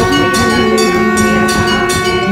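Telugu devotional song music: one long held note over a steady drumbeat, between sung lines.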